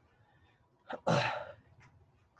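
One short, sharp burst of breath from a man about a second in, with a quick onset and a fast fade, like a sneeze or cough.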